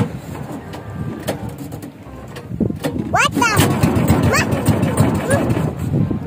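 High-pitched children's voices squealing or calling out briefly, twice, over a rough background noise that swells about halfway through.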